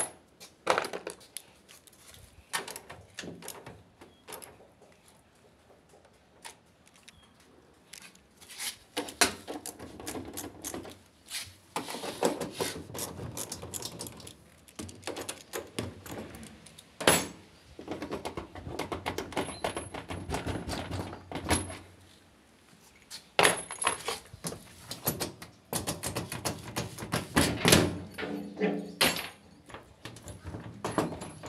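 Socket wrench clicking and clinking against the metal back panel of a washing machine as its transit bolts are unscrewed. Irregular bursts of metallic clicks and knocks, with a quieter stretch in the first few seconds.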